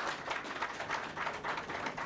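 An audience applauding, many hands clapping at once, thinning out near the end.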